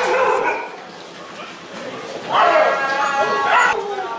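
A pack of shelter dogs calling together. The sound comes in two loud stretches, one at the start and another from a little past halfway until near the end.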